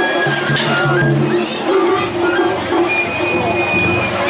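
Japanese festival hayashi music played from a pulled float: held high flute-like notes with a metallic clinking, over crowd voices.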